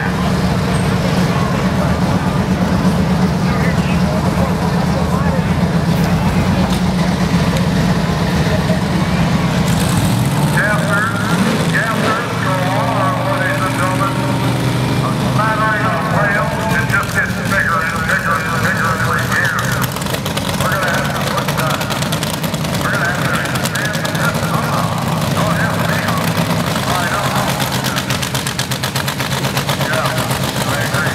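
A vehicle engine idling steadily with a low, even hum, its pitch shifting briefly about ten to thirteen seconds in. People talk over it from about ten seconds in.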